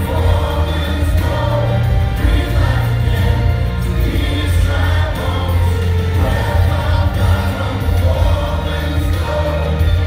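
Worship song: a group of voices singing together over a band with a strong, steady bass line.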